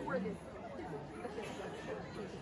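Spectators chatting at a low level, with a brief louder voice near the start.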